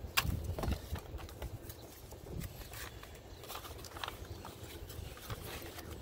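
Wind buffeting the microphone as a steady low rumble, with scattered light clicks and rustles of things being handled.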